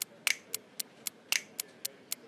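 Laptop keyboard keys clicking: an irregular run of sharp taps, about four a second.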